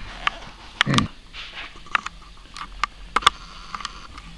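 Scattered light taps and clicks as small hands handle a cardboard toy drum book and turn its page.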